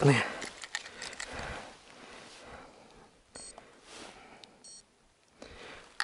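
Rustling handling noise that fades over the first two seconds, then two short, high electronic beeps, one just past the middle and another about a second later.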